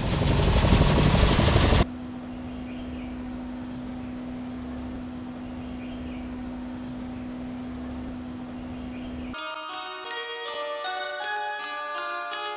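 A loud rushing sound effect for the time-travel vanishing, lasting about two seconds and cutting off abruptly. A steady hum under outdoor ambience follows. A little over nine seconds in, light music of bell-like mallet notes begins.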